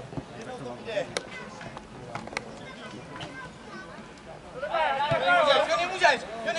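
Football match sounds: faint calls of players and a few sharp knocks of the ball being kicked, then loud shouting from a man for the last second and a half.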